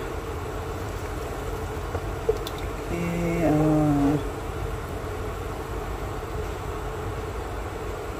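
Steady electric hum from a portable induction cooker under a low, even noise of the broth heating in the wok. A brief hummed voice sound comes about three seconds in.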